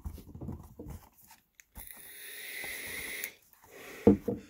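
A long drag on a vape: a steady airy hiss of about a second and a half that grows louder and then stops abruptly, after a few low handling bumps.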